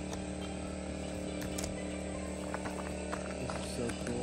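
A portable generator running with a steady, even hum, plus a few faint clicks.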